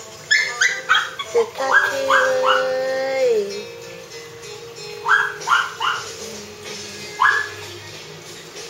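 A Pomeranian yapping in short, sharp bursts, mostly in quick runs of three, with a single yap near the end. Background music plays underneath.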